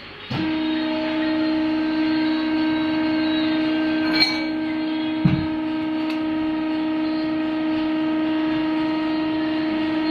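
Steady electric machine drone from the rubber vulcanizing press, starting suddenly about half a second in and holding one even pitch. Two short knocks of metal parts come around four and five seconds in.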